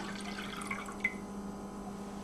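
Cold water poured from a glass measuring cup into a pan of dissolved cherry gelatin, a faint trickle and drip that ends about a second in with a small tick.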